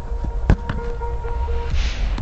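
A giant tennis ball kicked once, a sharp thud about half a second in, over low wind rumble on the microphone. A short run of repeated steady notes, like background music, follows the kick.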